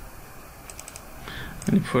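A few quick computer keyboard key clicks in two short clusters, then a man's voice begins near the end.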